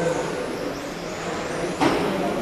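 Electric 1/10 RC touring cars with 13.5-turn brushless motors racing on a carpet track: a steady hiss of motors and tyres with faint rising whines, echoing in a large hall. A short sharp knock comes near the end.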